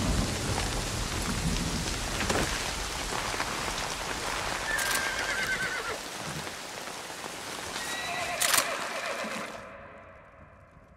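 Steady rain with a horse whinnying twice, about five seconds in and again near the end. The rain cuts off suddenly just before the end.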